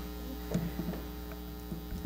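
Steady low electrical mains hum, with a few faint short sounds about half a second in.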